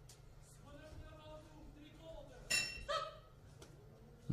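Boxing ring bell struck twice, about half a second apart, signalling the end of the round.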